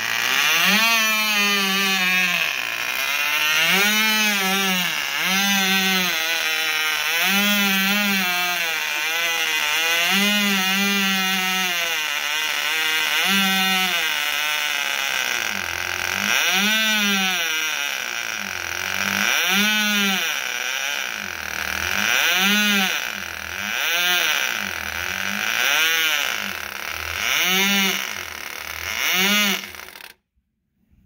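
Cox Medallion .049 two-stroke glow engine on a small free-flight model running at high speed, its pitch rising and falling repeatedly every one and a half to two seconds. It cuts off suddenly at the end, stopped by pinching off the fuel line.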